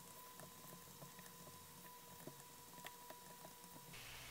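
Near silence: faint, irregular little taps of a stylus on a tablet or pen display as writing goes on, over a faint steady high whine.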